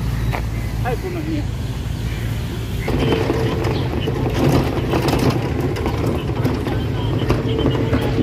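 An open vehicle running over a park road: a steady low running noise, with people's voices in the background. About three seconds in the sound gets louder and busier.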